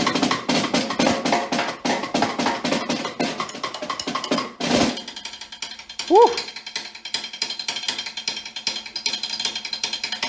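Concert snare drum played with sticks: dense, rapid strokes for the first half, then a loud stroke just before the halfway point, after which the playing turns to a quieter, fast, crisp pattern. About six seconds in, a voice gives a brief rising exclamation.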